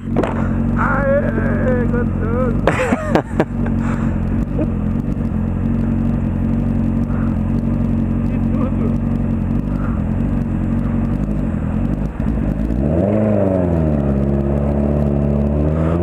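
Honda Hornet 600 inline-four motorcycle engine idling steadily. Near the end the revs rise and fall as the bike pulls away, then it runs steadily at a slightly higher pitch.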